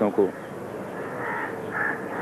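Two short bird calls in the background in the second half, over a steady low hum.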